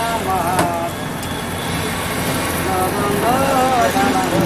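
Busy street-stall noise: a steady hiss of hot oil frying chicken balls in a large wok, mixed with road traffic. People's voices are heard about half a second in and again near the end.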